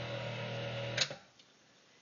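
Countertop blender motor running with a steady hum as it blends mole sauce, then switched off with a click about a second in, after which it is nearly silent.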